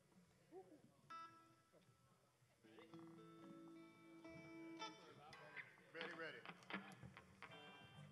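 Faint stray guitar notes on stage between songs: a short held note about a second in, then a longer held note lasting about two seconds, with faint voices in the background.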